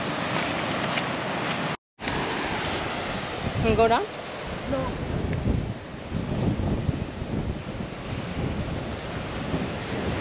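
Surf washing on a rocky shore, with gusty wind buffeting the microphone. The sound drops out for a moment just before two seconds in, and a brief voice comes in at about four seconds.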